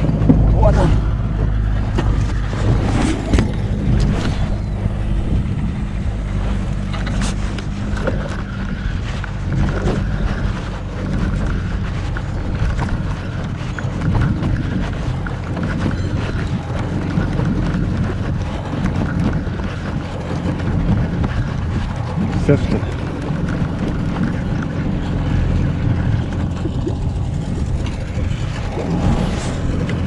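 Outboard motor on an inflatable boat running steadily, a low even hum, under wind and water noise.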